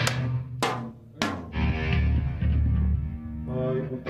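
Rock band playing live: three hard drum-kit hits in the first second and a half, then the band holds a sustained chord on guitars and bass, shifting to a higher chord near the end.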